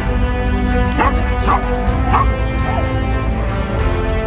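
A Croatian sheepdog barking while herding sheep: three barks from about a second in, then a fainter fourth, over background music.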